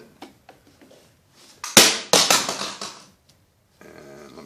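Handling noise close to the microphone: a few light clicks, then two sharp knocks with scraping about two seconds in, fading over the next second.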